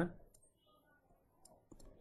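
A few faint, sharp clicks of a stylus tip tapping on a tablet while handwriting, spaced out through a mostly quiet pause.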